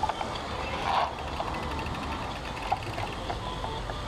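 Riding noise from a bicycle-mounted camera: a steady wind rumble on the microphone and the bike rattling over paving stones, with scattered small clicks.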